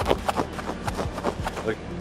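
Dry crackling and crunching of a red microfiber coating applicator pad, stiff with dried coating, as it is squeezed and crumpled in the hands. The crackles come as a rapid, irregular string of small snaps.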